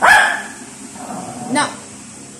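Shih Tzu barking demandingly to be given bread: a loud bark at the start and another short, sharp one about a second and a half later.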